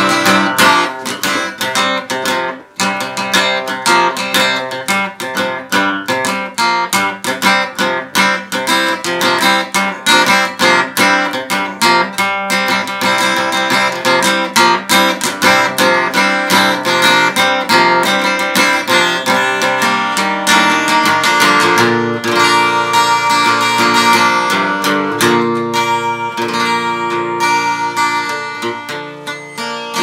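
Steel-string acoustic guitar strummed briskly in a steady rhythm, with a brief break just under three seconds in. About two-thirds of the way through, the strumming gives way to slower, ringing chords that fade toward the end.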